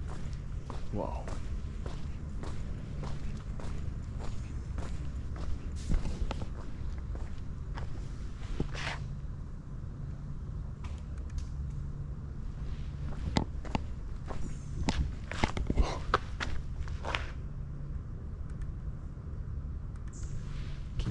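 Footsteps on a paved path, a steady run of short scuffs and knocks over a steady low hum.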